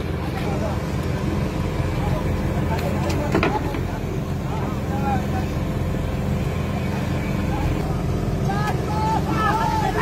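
Fishing boat's engine running steadily under the rush of water spray, with men calling and shouting now and then, mostly near the end, and a sharp knock about three seconds in.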